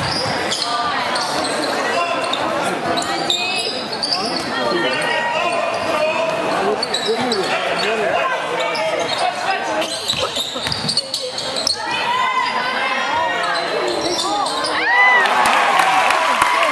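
Spectators talking throughout a high school basketball game in a gym, over a basketball being dribbled on the hardwood court. The voices swell louder near the end.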